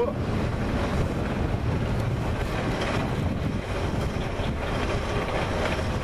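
Wind buffeting an outdoor microphone: a steady low rush of noise with no pitch, rising and falling slightly.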